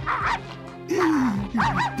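A cartoon dog barking a few times over background music.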